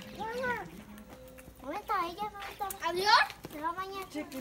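Young children's high-pitched voices calling out in short bursts, with pitch arching and rising: three calls, the loudest about three seconds in.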